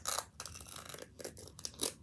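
Plastic wrapping of a Mini Brands toy capsule crinkling and tearing as it is peeled open by hand, in irregular crackles with a sharper one near the end.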